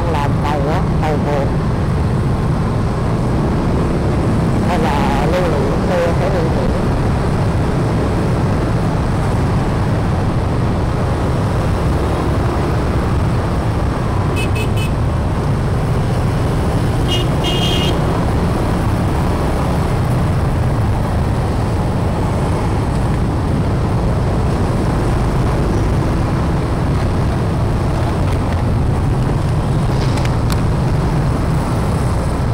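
Steady low rumble of a moving motorbike and the wind on it, riding in dense scooter and car traffic. Two short, high-pitched horn beeps come about halfway through.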